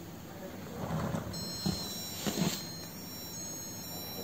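Tiny piezo speaker in a 3D-printed Duplo block, driven by an Espruino Puck.js, sounding a high electronic siren tone. The tone is a cluster of steady high pitches that starts about a second in and holds. A few faint handling noises lie underneath.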